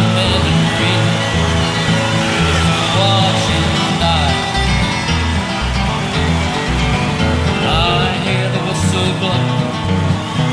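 A bluegrass band playing an instrumental break: plucked guitar over a steady, bouncing bass line, with a few sliding melody notes.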